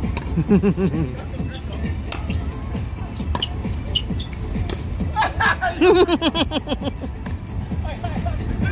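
A pickleball rally: hard paddles popping a plastic ball several times, with players laughing loudly just after the start and again about five seconds in.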